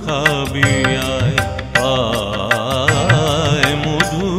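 Instrumental passage of Bengali devotional music (Shyama Sangeet): a wavering, ornamented melody line over a sustained low drone, with regular percussion strokes.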